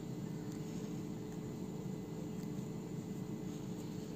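Room tone: a steady low hum with faint hiss and a few faint steady tones, like a running appliance or fan in the room.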